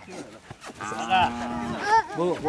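Young Khillar calf bellowing once for about a second, then a shorter rising cry near the end, while it is held by the head for nose piercing.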